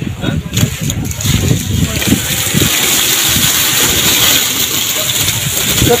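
Red onions tumbling out of a jute sack onto a heap, a dense, steady rattling rumble of many bulbs rolling, with voices mixed in.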